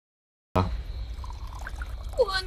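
Liquid poured from a ceramic teapot into a small ceramic cup, a steady trickle that starts abruptly about half a second in.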